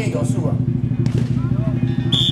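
Fast, continuous drum roll on a large dragon-dance drum, with voices calling over it.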